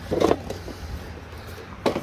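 A single sharp knock near the end as a book-shaped tin box is set down on a stack of cardboard boxes, over a low steady rumble.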